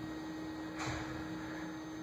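A steady electrical hum over faint room noise, with one short, soft sound just under a second in.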